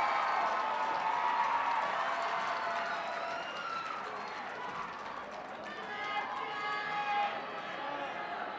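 Audience cheering and clapping in welcome, loudest at first and dying down over several seconds into scattered crowd voices.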